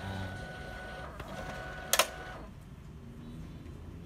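HP ScanJet 2500 f1 scanner's motor running with a steady whine, then a single sharp click about two seconds in, after which the whine stops.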